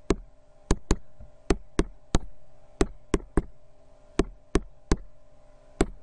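Sharp, short clicks, about thirteen at uneven intervals, as numbers are keyed into an on-screen graphing calculator to add up a list of values.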